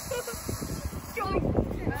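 Voices and laughter, with low wind rumble on the microphone that grows stronger in the second half.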